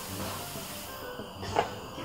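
Soft rustling of clothing and sofa cushions as a person shifts about on a fabric sofa, loudest at first and fading over about a second. A short vocal sound comes about one and a half seconds in.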